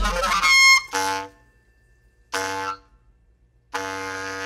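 Clarinet in a free-improvised live set: a bright, squealing high phrase in the first second, then short held notes that stop abruptly into near silence twice, with a sustained note starting again near the end.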